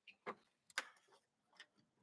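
Near silence, broken by two faint short clicks, about a quarter and three quarters of a second in.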